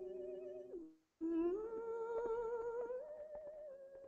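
A woman singing long wordless notes with a steady vibrato. The first note breaks off about a second in. The next starts low, slides up and steps to a higher note near the end as it fades. A few faint soft clicks sound under the second note.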